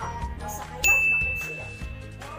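A single high, bell-like ding sound effect that starts a little under a second in and rings for about a second as it fades, over light background music.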